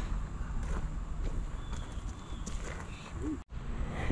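Low outdoor background with wind rumble on the microphone and faint, irregular soft footfalls on grass. It breaks off abruptly near the end.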